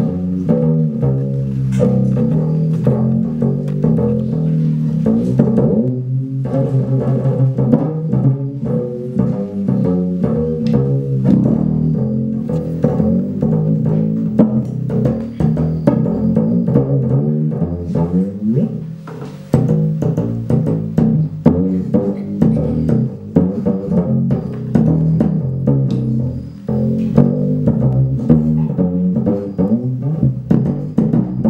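Diddley bow, a single upright-bass D string tuned to C, beaten with two drumsticks in a fast, busy rhythm. The pitch jumps between notes, with a sliding glide a little past halfway.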